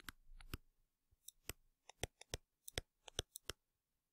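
Faint, irregular clicks and taps of a stylus on a tablet screen while handwriting, a dozen or more short ticks spread unevenly.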